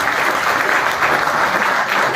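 Audience of students applauding steadily, a dense patter of many hands clapping.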